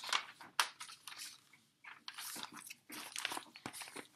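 Paper rustling and crinkling as a large picture book is handled and its pages are turned, in a series of soft, irregular strokes.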